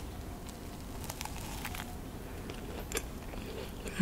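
A person chewing a macaron close to the microphone: soft, scattered crunches and mouth clicks of the meringue shell, a few each second.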